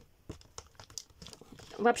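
Faint handling noises: a few light clicks and soft crinkling as a small wooden mini easel and the shredded-paper filler of a gift box are handled.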